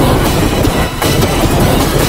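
A children's cartoon song so heavily distorted by audio effects that it has become a loud, dense, churning noise with no recognisable melody.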